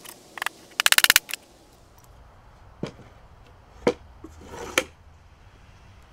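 Wooden boards of a small box being handled and set down on a plywood workbench: a few separate knocks and a brief scrape, with a fast run of about eight clicks about a second in.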